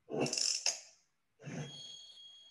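Logo sting opening an online video: a short noisy burst ending in a sharp click, then a second burst with high steady ringing tones held to the end.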